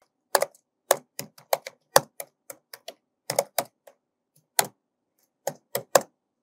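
Computer keyboard being typed on: irregular keystroke clicks, a few a second, thinning out toward the end.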